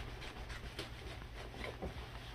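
Faint scratching and crackling of a kitchen knife working through the tough, knobbly rind of a jackfruit, scoring it deeper, over a low steady hum.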